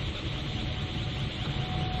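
Steady low rumbling noise with no distinct events: an ambient background sound effect under the animation.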